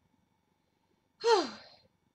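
A woman's short voiced sigh, breathy and falling in pitch, just over a second in after a near-silent pause.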